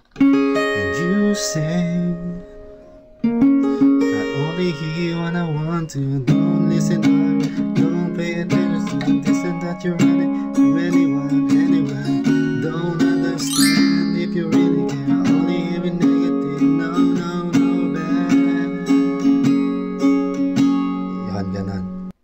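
Acoustic guitar with a capo playing chords, picked note by note for the first couple of seconds. After a brief dip it is strummed steadily in a down, up-up-down, up-up-down, down-up pattern.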